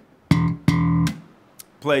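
Enfield Lionheart electric bass: two thumb-slapped notes on the open E string, about 0.4 s apart, the first cut short and the second held for a full eighth note before dying away.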